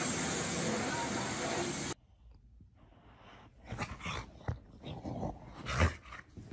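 A steady rushing hiss of a hose spraying water, heard from inside a car, stops abruptly about two seconds in. After a moment of near silence, a dog makes scattered short whimpering and snuffling sounds, with a louder one near the end.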